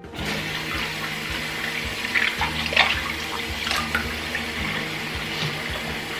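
Bathroom sink faucet turned on at the start and running steadily into a basin partly filled with water, with a few brief splashes as hands rinse sponges under the stream.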